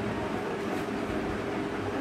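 A steady low droning tone that holds at one level, with no other event standing out.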